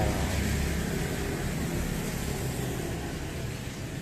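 Steady hum of road traffic from vehicles passing on a busy street, with no distinct single event standing out.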